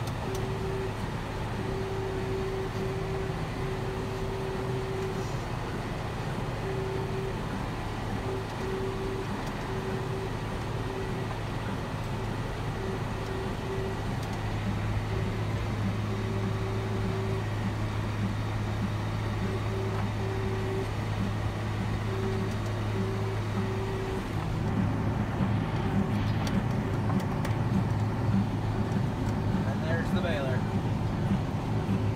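Tractor engine running steadily under load, heard from inside the cab while it pulls a small square baler through a hay windrow. The sound becomes louder and rougher about six seconds before the end.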